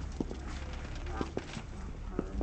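Footsteps of a group walking on brick paving, hard shoe taps every few tenths of a second, with voices of the surrounding press pack.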